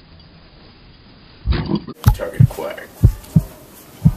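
Heartbeat sound effect: low double thumps, lub-dub, about once a second, starting about halfway in. It is preceded by a short, loud, harsh sound.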